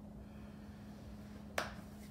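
A single sharp click about one and a half seconds in, over a faint, steady low hum.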